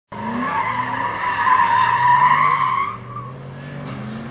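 Dodge Dakota pickup's tyres squealing loudly as it corners hard, with its engine running underneath. The squeal cuts off about three seconds in, leaving the engine note.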